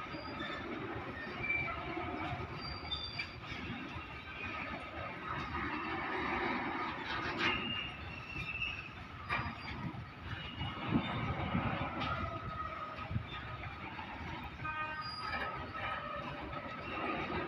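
A freight train of BTPN bogie tank wagons rolling steadily past, its wheels rumbling on the track with a few sharp clanks and short high-pitched wheel squeals now and then.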